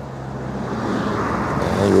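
A vehicle's rushing noise, growing steadily louder as it approaches, over a steady low hum.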